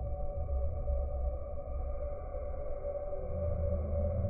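Slowed-down sound of a passenger train rolling past: a deep, uneven rumble with a steady hum above it, growing a little louder near the end.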